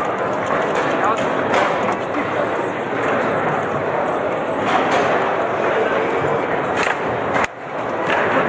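Hubbub of many voices in a large hall, with scattered sharp clacks and knocks of table-football balls and rods, the loudest near the end.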